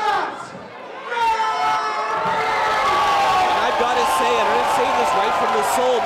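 A ring announcer calling out over the arena PA in a long, drawn-out shout, holding his voice from about a second in to the end. A crowd cheers and yells underneath.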